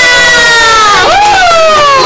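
Several young women squealing and cheering together in long, high-pitched shrieks that slowly slide down in pitch.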